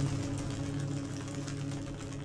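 Live-coded electronic music from TidalCycles. A steady low drone with overtones sits under a dense crackling texture of chopped, degraded samples, easing off slightly.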